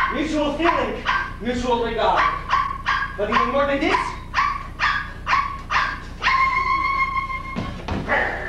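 Dog-like yelping with rising and falling pitch, then quick barks about three a second, then a steady high held tone for about a second and a half near the end.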